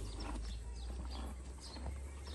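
A low, steady rumble with faint, scattered bird chirps over it.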